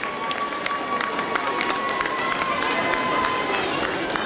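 Audience clapping: scattered, irregular claps over crowd noise. A steady high-pitched tone is held through most of it and stops shortly before the end.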